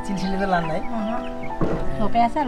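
Chickens clucking in a wire coop, over background music of long held notes.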